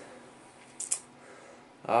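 A pause in a man's speech: quiet room tone with one brief, soft high hiss about a second in, then his voice starts again near the end.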